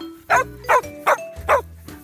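A dog barking four times in quick succession, about two and a half barks a second, over background jazz music.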